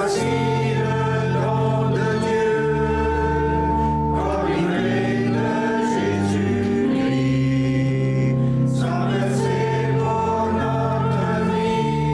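Church choir singing the entrance hymn, accompanied by a pipe organ holding long sustained chords underneath.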